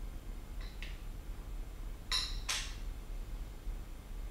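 Fork lowers being slid by hand onto the black upper tubes of a DT Swiss Single Shot 2 one-piece magnesium suspension fork: a couple of faint light clicks about half a second in, then two short brighter rubs around two seconds in, over a low steady hum.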